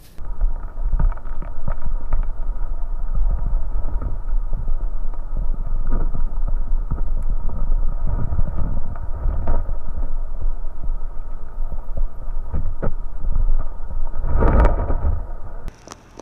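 Muffled underwater sound picked up by a camera held just below the surface: a loud low rumble and throbbing of water moving around the housing, with scattered small clicks and knocks. It begins abruptly as the camera goes under, surges briefly near the end, and cuts off as the camera comes out of the water.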